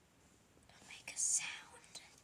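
A person whispering briefly, about a second of hushed, hissy speech in the middle with no voiced tone.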